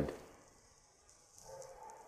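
Mostly near silence after the voice fades, then faint soft handling noise in the second half as the stove's red lid is moved into place.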